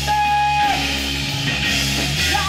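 Live worship song: a woman sings into a microphone over an amplified band with guitar, holding one long note that ends under a second in.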